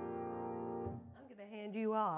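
The last chord of a hymn on the piano rings out and fades, and is damped about a second in. It is followed by a short, wavering vocal sound from a person.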